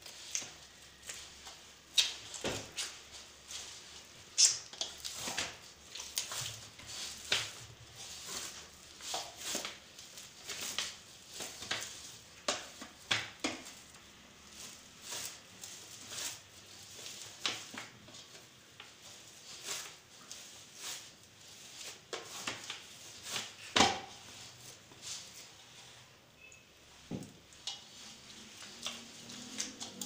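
Hand kneading whole-wheat chapati dough in a stainless steel bowl: irregular presses and slaps of the dough, with the bowl clicking and knocking about once or twice a second, a few knocks louder than the rest.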